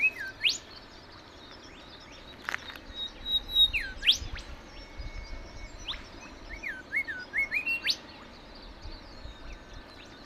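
Wild birds calling from the scrub: scattered whistled notes that sweep sharply up or down in pitch, some in short runs of several, spread through the whole stretch.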